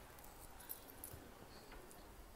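Near silence: quiet room tone with a few faint small clicks.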